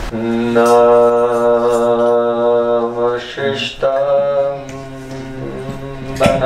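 A man chanting a Sanskrit invocation prayer in long, steady held notes: one drawn-out note for about three seconds, a short break, then another held note.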